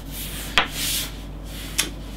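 Rubbing and scraping of small metal atomiser parts as the top cap is worked off a UD AGI rebuildable atomiser by hand. There is a sharp click about half a second in and another near the end, as of a metal piece knocking on the wooden table.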